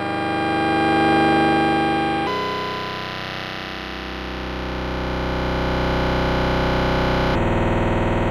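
Synthesis Technology E350 Morphing Terrarium wavetable oscillator playing sustained, buzzy synth notes from the keyboard. Its tone and loudness shift slowly as LFOs sweep the X and Y morph controls. It moves to a new, lower note about two seconds in and changes again near the end.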